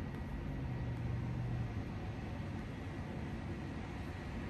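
Steady outdoor town background noise with a low engine hum from a distant vehicle, which fades out a little under two seconds in.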